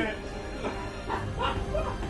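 Background music with a few short, high yelping calls over it.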